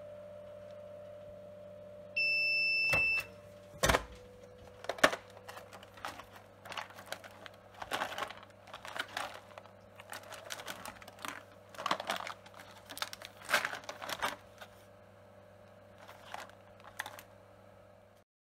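HTS-225 manual tray sealer humming steadily, its cooling fan running; about two seconds in it gives a loud one-second beep, the signal that the heat-sealing time is up, followed by a sharp click as the press is released. The rest is irregular crinkling of the plastic tray and its sealing film as the sealed tray is handled.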